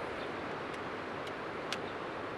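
A spinning reel clicking a few times during a cast, the sharpest click near the end, over a steady outdoor hiss.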